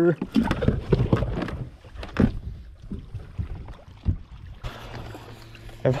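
Knocks and handling noises on the carpeted deck of a bass boat as a freshly caught fish is dealt with. The knocks are busiest in the first second or so, then scattered. About three-quarters of the way through, a steady low hum starts and runs until just before the end.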